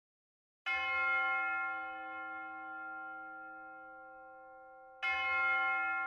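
A bell struck twice, about four seconds apart, each stroke ringing out with several steady overtones and fading slowly.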